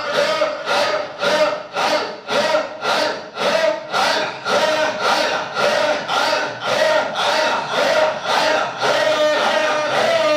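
A man chanting into a microphone over the loudspeakers, with many voices of the crowd joining in, in a quick steady rhythm of about two to three beats a second.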